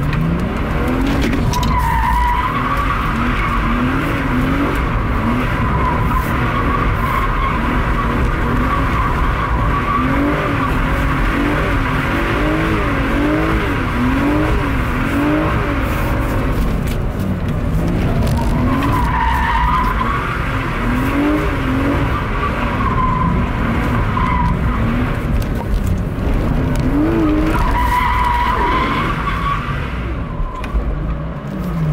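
BMW E36's straight-six engine revving up and down over and over as the car drifts, with its rear tyres squealing in spells about two seconds in, about two-thirds of the way through and near the end.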